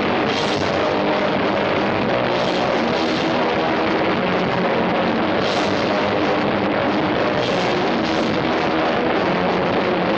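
Punk rock band playing live: electric guitars over a drum kit, with several cymbal crashes through the passage and no singing. Loud and steady, recorded from within the small room.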